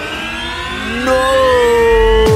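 Electronic film-score riser: several tones glide slowly upward together, siren-like. About a second in, a loud held synth tone enters and sinks slowly in pitch.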